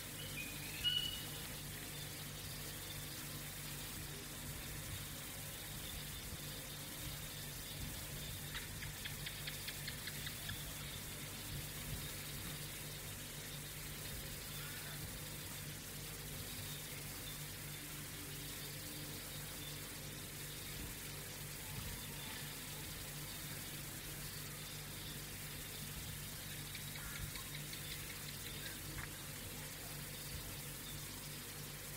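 Faint steady hiss with a low steady hum: background noise of a talk recording in a silent meditation pause. A short, faint rising chirp sounds about a second in.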